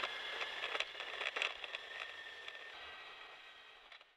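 Faint steady hiss with a few soft clicks, fading out to silence by the end.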